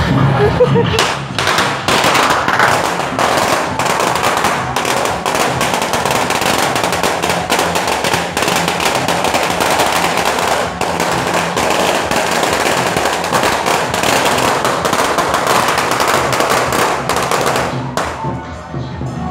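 A long string of firecrackers going off in rapid, unbroken crackling for about sixteen seconds. It starts about a second in and stops just before the end.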